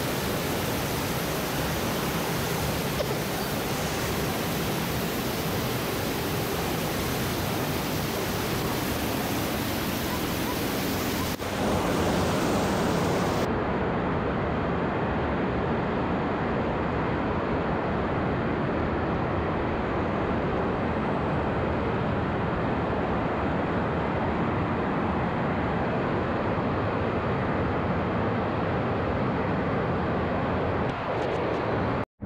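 Loud, steady rush of a river cascade pouring through a narrow sandstone slot canyon. About a dozen seconds in, the sound abruptly loses its top hiss and carries on duller.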